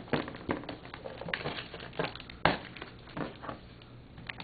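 Packing tape being picked at and peeled off a cardboard box: irregular crackles and scratches, with one sharper click about two and a half seconds in.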